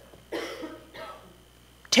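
A woman coughing twice, about two-thirds of a second apart, into her hand.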